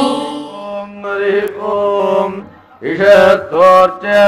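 Male Vedic chanting of Sanskrit mantras, sung on a few steady, level pitches with a brief break just before the last second. A held musical note fades away at the very start.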